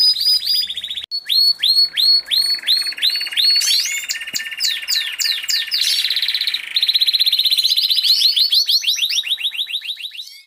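Many small cage birds calling at once: overlapping short, high chirps that slide downward, and fast trills, with a brief break about a second in.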